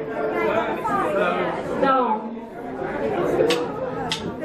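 People talking and chattering in a reverberant room between songs of a live band set. A single sharp click comes near the end.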